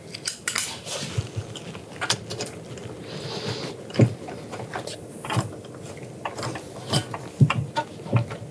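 Ratchet and long socket extension working the bolts of a polished aluminium exhaust manifold on a two-stroke engine: scattered metallic clicks and clinks of the tool against the parts, with a sharper knock about four seconds in.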